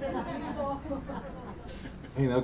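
Quiet, indistinct chatter: several people talking softly at once, with no single clear voice.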